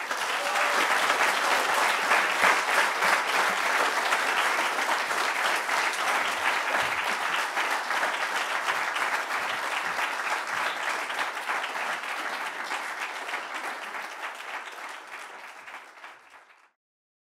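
Audience applauding steadily, the applause slowly dying away and fading out near the end.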